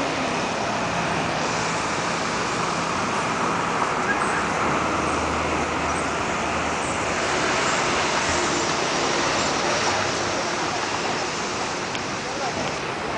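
Steady urban street traffic noise, a continuous wash of passing vehicles with no single event standing out.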